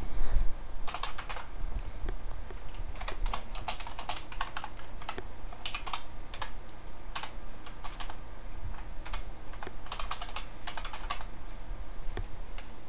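Typing on a computer keyboard: irregular runs of quick key clicks with short pauses between them.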